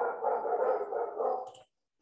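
A dog vocalizing, one drawn-out call lasting about a second and a half that stops suddenly.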